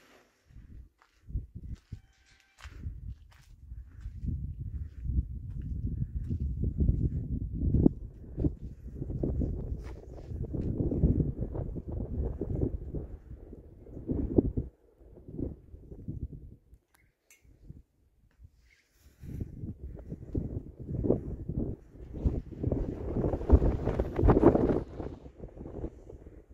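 Wind buffeting a phone microphone: an uneven low rumble in gusts, which drops out for a few seconds in the middle and then picks up again.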